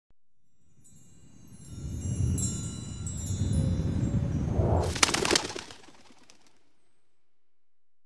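Intro sound design for an animated logo: shimmering chime-like tinkling over a swelling low rumble, ending about five seconds in with a quick cluster of sharp clicks, then fading away.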